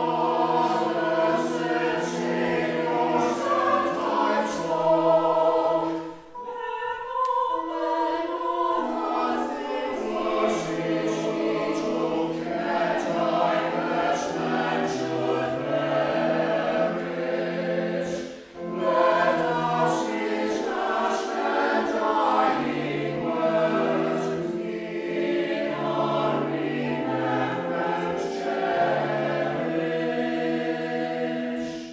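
Mixed choir of men's and women's voices singing a sacred choral piece in sustained phrases, with short breaks for breath about six seconds in and again after about eighteen seconds.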